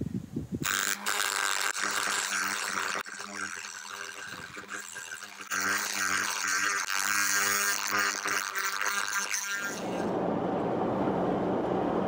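Die grinder running steady and grinding back corroded metal on a Volvo marine engine's exhaust manifold. The grinding eases for a couple of seconds, then turns harsh again. Near the end it gives way to steady road noise inside a moving car.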